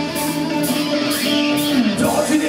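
Rock band playing live: electric guitars over drums and cymbals, with no singing. A held note slides down in pitch near the end.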